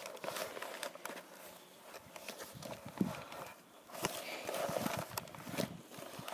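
Faint handling of a cardboard icing sugar box, with soft rustling and scattered small taps and clicks as a teaspoon is worked into it to scoop out the sugar.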